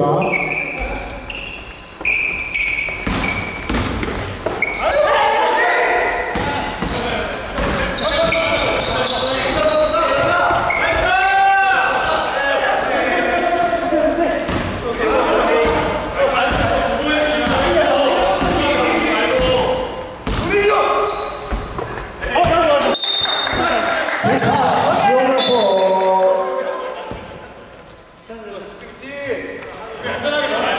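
Basketball bouncing on a wooden gym floor during play, among indistinct voices echoing in a large hall.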